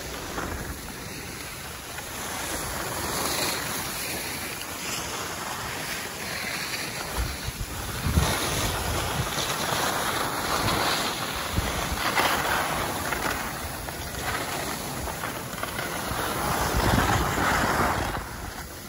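Wind buffeting the microphone, mixed with the hiss and scrape of skis sliding on packed snow during a run down a groomed slope. The rushing noise rises and falls in waves, with a few low rumbles from gusts.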